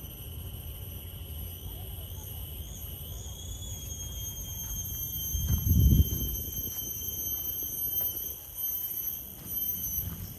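Steady, high-pitched drone of insects in tropical woodland, several shrill tones held without a break. From about halfway, footsteps on a dry leaf-litter path tick in, with a low rumble about six seconds in as the loudest moment.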